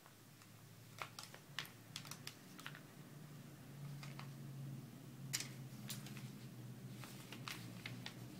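Faint, irregular small clicks and taps of fingers handling an iPod Touch and its plastic parts, about eight over the span, over a low steady hum.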